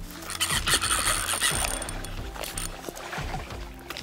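Background music with a steady low bed.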